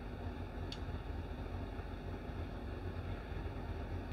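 Room tone: a steady low hum under a faint hiss, with one faint short high tick about two-thirds of a second in.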